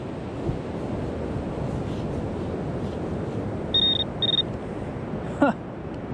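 Handheld metal-detecting pinpointer giving two short high beeps in quick succession about two-thirds of the way in, signalling a target in the sand, over a steady hiss of surf and wind. A brief rising sound comes shortly after the beeps.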